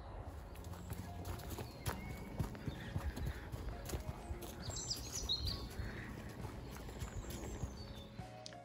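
Footsteps crunching on a leaf-strewn dirt path, with irregular scuffs and clicks, and a few short bird chirps about five seconds in.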